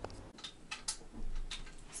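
A few faint clicks, with a brief, slightly louder handling noise about a second and a half in.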